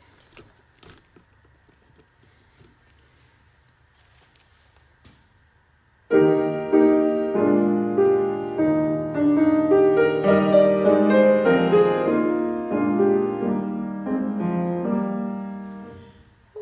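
Piano playing the introduction to a solo song: after about six seconds of quiet with a few faint knocks, the piano comes in with sustained chords, then dies away near the end.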